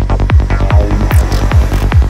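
Full-on psytrance: a steady four-on-the-floor kick drum, about two and a third beats a second, with a driving bass between the kicks and a brief high swishing synth sweep about halfway through.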